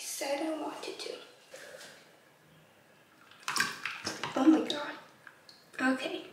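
A girl's quiet speech, then water splashing in a bowl of ice water about three and a half seconds in as she plunges her face in, with her voice mixed in.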